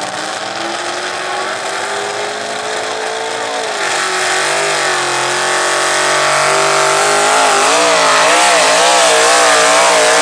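Pickup truck's engine at full throttle pulling a weighted sled. The revs climb steadily, then the engine gets louder about four seconds in. Through the second half the pitch wavers up and down about twice a second.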